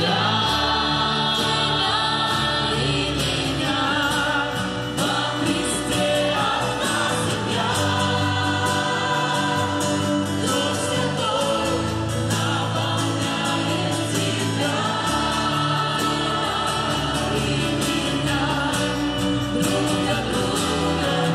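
A worship choir and congregation sing a gospel song together. Keyboard, acoustic guitar and violin accompany them.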